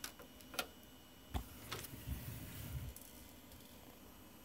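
Several faint, separate clicks and taps, with a soft low rumble about two seconds in, over quiet room tone.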